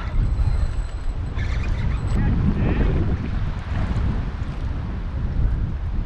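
Gusty wind buffeting the microphone, a steady low rumble ahead of an approaching storm.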